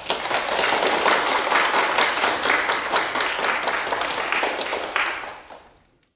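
Audience applauding, a dense patter of many hands clapping that fades out near the end.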